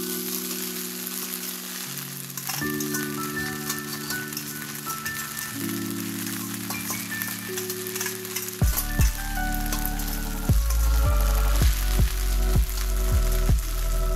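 Onions and green chillies sizzling in a frying pan as spaghetti is tipped in, under background music of held notes that gains a deep bass line about nine seconds in.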